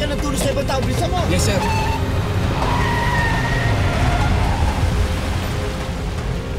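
A vehicle engine running with a steady low rumble under dramatic background music, with raised voices in the first second or so.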